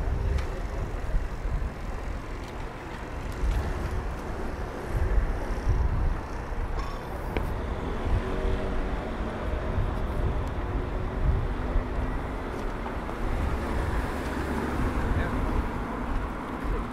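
Busy city-street ambience: a steady low rumble of road traffic with passing vehicles, and faint voices of passers-by underneath.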